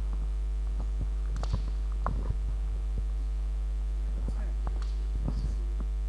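Loud steady electrical mains hum with a ladder of overtones, carried by the sound system. Scattered soft knocks and bumps, like a handheld microphone being handled, break in at irregular moments.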